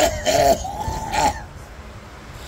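A man coughing hard, two rough coughs with a groan in them in the first second or so, then quieter. He is short of breath.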